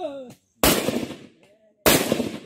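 Two rifle shots about a second and a quarter apart, each a sudden crack that trails off over most of a second.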